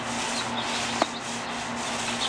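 Paint roller on an extension pole rolling wet coating across a balcony deck: a steady rasping rub. A sharp click about a second in.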